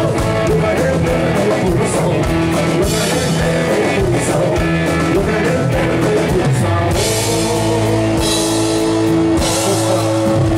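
Rock band playing live: electric guitars, bass and drum kit with cymbals, with a singer's voice, and a note held for about three seconds in the second half.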